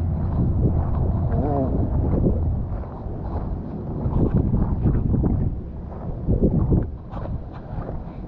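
Wind buffeting a handheld camera's microphone, a loud, steady low rumble, with a brief snatch of voice about a second and a half in.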